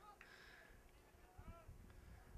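Near silence, with faint distant voices from the field about one and a half seconds in.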